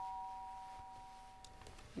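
Two-tone ding-dong doorbell chime, its higher and lower notes ringing on and fading away near the end: someone is at the door.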